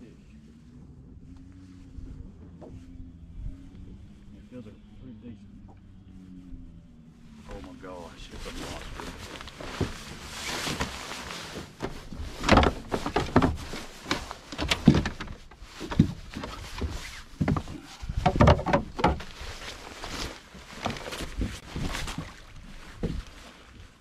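Heavy rustling and bumping close to the microphone: a fishing jacket brushing and knocking near the boat-mounted camera, loud and irregular after the first several seconds. Before that, only a faint low hum that slowly rises and falls in pitch.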